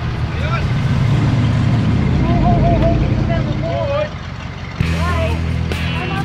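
A vehicle engine idling with a low rumble while people talk over it. The rumble breaks off about four seconds in, and steady music-like tones come in just before the end.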